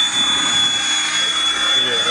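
Align T-Rex 700E electric RC helicopter flying: a steady high-pitched motor whine that sinks slightly in pitch, over rotor noise.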